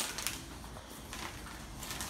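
Faint rustling and light crackling of something being handled, with a small click near the start.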